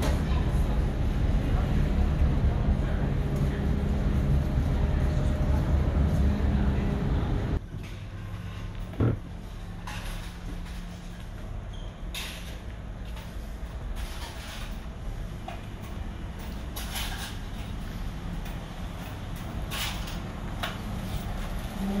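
Steady low drone and hum of the ferry's engines and machinery heard inside the passenger deck. The drone drops abruptly to a much quieter hum about seven and a half seconds in. A brief thump comes about a second later, and scattered light clicks and clatter follow.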